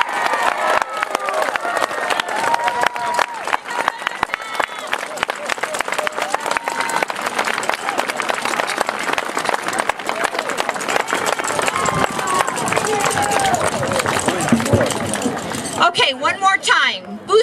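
Audience clapping steadily after a taiko drum performance, mixed with scattered shouts and cheering voices.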